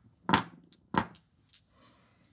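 Sharp clicks and knocks of a glass marble and a plywood height module being handled on a table: two louder knocks about a third of a second and a second in, then a few lighter clicks.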